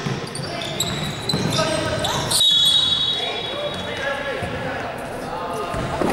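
Indoor basketball game: voices calling across a large, echoing gym and a ball bouncing, with one steady high whistle blast of about a second a little over two seconds in, the sign of a referee stopping play.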